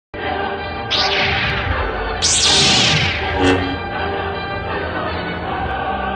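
Trailer music holding sustained chords, cut by two loud swishing hits, about one and two seconds in, that each fade over most of a second.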